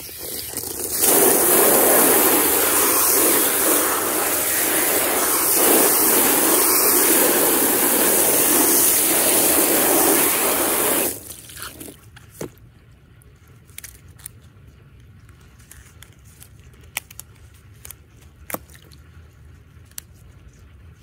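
Garden hose spray nozzle jetting water onto a tied ice-dyed cotton onesie on a plastic tray, rinsing out the dye: a steady, loud rush of spray that starts about a second in and cuts off abruptly after about ten seconds. Then only faint clicks and wet fabric handling.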